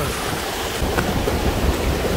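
Steady rushing roar of a mountain waterfall, with low rumble from wind on the microphone.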